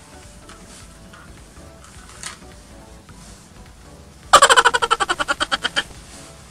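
A miniature Shetland stallion whinnying: one loud call of about a second and a half with a fast quaver, loudest at the start and fading, about two-thirds of the way in, over background music.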